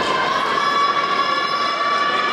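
A sustained, steady, high-pitched tone with overtones, held for about three seconds over the general hubbub of a crowded hall.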